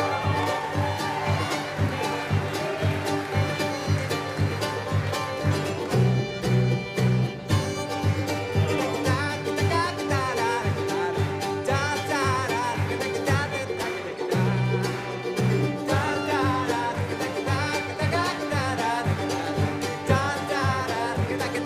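Acoustic bluegrass string band playing an instrumental passage live: a fiddle line with vibrato over rapidly picked strings and a bass line.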